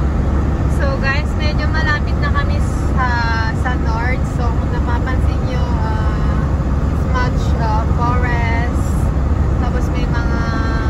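Steady low rumble of a motorhome's engine and tyres heard from inside the cab while driving at motorway speed.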